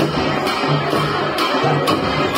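Live traditional band music from drums and horns. Sharp drum strokes beat over a low note that repeats about every half second.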